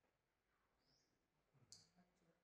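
Near silence: faint room tone, with one brief faint click near the end.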